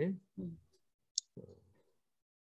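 A man's speech trails off, then a single short, sharp, high click about a second in, followed at once by a brief soft low noise.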